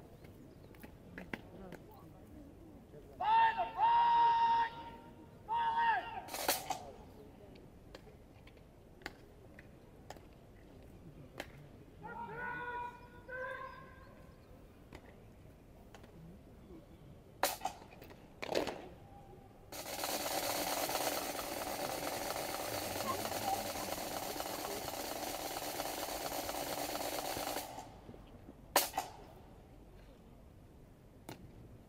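Parade-ground words of command shouted by a drill sergeant, each word drawn out on a high held pitch, twice near the start and once more, quieter, about halfway. Sharp slaps and clicks of rifle drill follow, and late on a steady rushing noise lasts about eight seconds.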